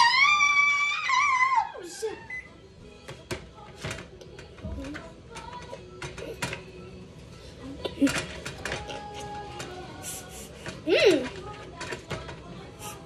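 Background voices and music, opening with a loud, high, wavering vocal note about two seconds long, with scattered light clicks throughout.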